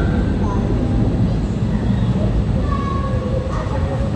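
Boeing 737 twin jet engines at takeoff thrust: a loud, steady low rumble that eases slightly as the airliner climbs away.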